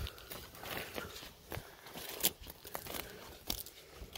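Footsteps crunching across grass and twig-strewn ground, an irregular run of short crackles and snaps.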